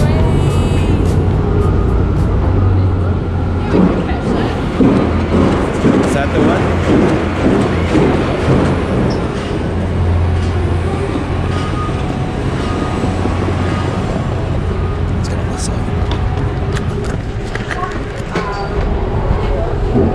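City street noise at a tram stop: indistinct voices and traffic over a steady low rumble, with background music playing over it.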